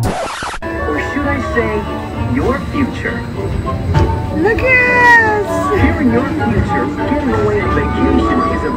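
Music from a dark-ride vehicle's onboard screen soundtrack, opening with a short whoosh, with voices over it and a falling glide in pitch about five seconds in.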